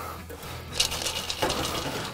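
Melted butter and sugar poured from a small stainless-steel pot over popcorn in a steel bowl: a short, fine crackling pour from about a second in.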